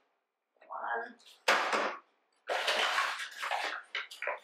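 Paper flour bag rustling and crinkling as a measuring cup is dug into the flour: a short sharp scrape about a second and a half in, then a longer rustle through most of the second half.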